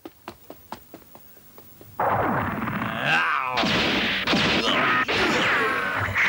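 Cartoon fight sound effects. A run of faint taps is followed, about two seconds in, by a sudden loud din of crashes and impacts with falling whines, as a giant stone monster attacks a robot.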